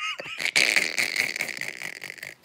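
A woman laughing hard in breathy, wheezing gasps, with hardly any voice in it.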